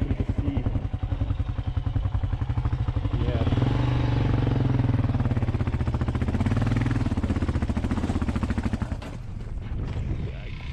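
Single-cylinder dual-sport motorcycle engine running at low revs on a rocky hill climb. The revs rise about three seconds in and hold, then drop off near the end as the throttle closes.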